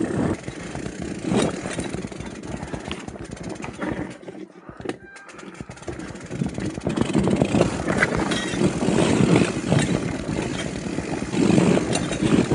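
Loaded bikepacking mountain bike on a rough, rocky trail: tyres crunching over stones and thorny brush scraping along the bike and its bags, over a low, uneven rumble. It goes quieter for a moment around the middle, then the crunching and scraping come back louder.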